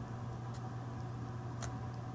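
Quiet room with a steady low hum and two faint short clicks, about half a second and a second and a half in, from hands working a handheld paper craft punch.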